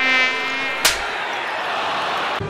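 A short, harsh buzzing tone for under a second, then a sharp click, followed by arena crowd noise.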